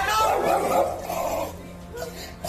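A man's loud, angry shouting, fading out after about a second and a half, with background music underneath.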